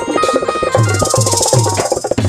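Instrumental passage of Rajasthani bhajan music: a fast, steady hand-drum beat under a held melody, with a bright metallic cymbal shimmer joining under a second in.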